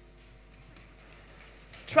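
Faint shuffling and knocking of an audience getting up from their seats, over a faint steady hum. A woman starts speaking near the end.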